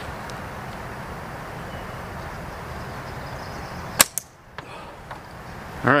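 An aluminium slingshot is shot once about four seconds in: a sharp crack as the bands release, then a quick second knock and fainter clicks from the steel flipper target being hit. Before the shot there is a steady background rush.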